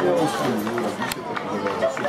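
Several voices of people at an outdoor football match talking and calling out over one another, with no clear words. A single sharp knock about a second in.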